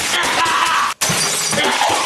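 Smashing and shattering, like breaking glass or crockery, over background music; the sound drops out for an instant about halfway through, then carries on.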